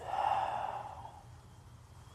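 A man's long, breathy sigh, swelling at once and fading away over about a second: a sigh of dejection and self-reproach.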